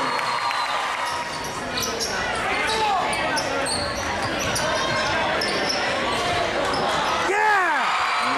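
Gym crowd noise during a basketball game: steady chatter and shouting from the bleachers, with a flurry of short sneaker squeaks on the hardwood court in the middle and the ball being dribbled.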